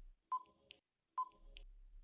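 Quiz countdown timer sound effect: short, faint electronic beeps about a second apart, two of them, ticking off the answer time.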